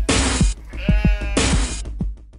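Intro music with a heavy bass line and two long, noisy hits, and a wavering, pitched voice between them about half a second to a second in.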